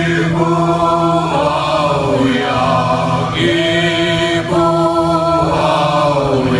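Several voices chanting together in long held notes, phrase after phrase, over a steady low drone, in a live concert hall.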